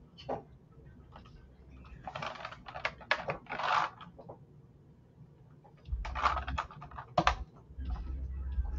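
Computer keyboard keys clicking in a few short flurries of keystrokes, with a low hum coming in about six seconds in.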